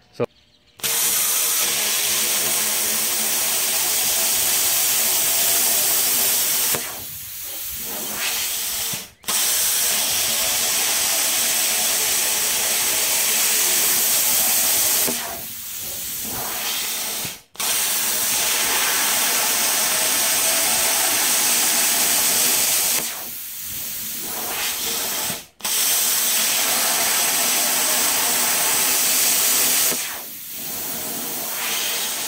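Plasma cutter cutting through rusty 2-7/8 inch steel pipe: a loud, steady hiss of the arc and air in four long runs. Each run drops to a softer hiss for about two seconds, then stops briefly before the torch is fired again.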